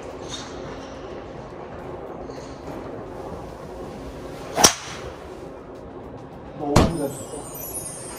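A driver's clubhead strikes a golf ball once, a single sharp hit about halfway through. Near the end there is a duller thump, followed by a man's exclamation.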